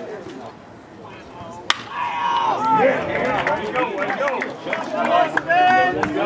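A single sharp crack of a bat hitting the ball about two seconds in, followed by many overlapping voices of fans and players shouting and cheering as the play unfolds.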